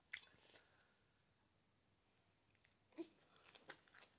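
Faint chewing: a few soft mouth clicks near the start and again about three seconds in, with near silence between.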